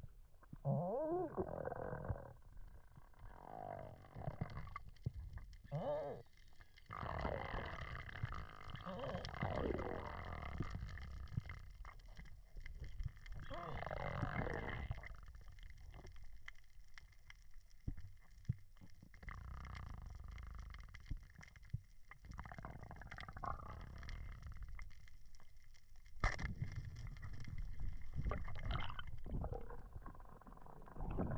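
Muffled underwater sound from a camera in a waterproof housing during a dive: low rumbling water noise with scattered clicks and a few wavering pitched sounds. One sharp knock about 26 seconds in is the loudest event.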